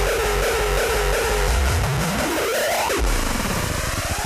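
Hardcore techno from a DJ mix: a distorted, heavy kick-drum beat under dense noisy synths. About two seconds in, a synth sweep rises steeply in pitch as the beat thins out, a build into the next section.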